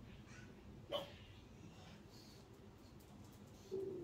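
Dark wheat beer poured slowly from a bottle into a tall glass, faint, with a short sharp sound about a second in.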